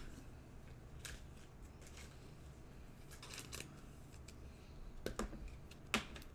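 Faint rustles and light clicks of trading cards being handled by hand and set against a desk mat, a few scattered touches with a sharper click near the end, over a steady low hum.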